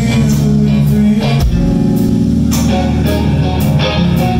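Live band playing: electric guitar over drums and held low bass notes, with regular drum and cymbal hits.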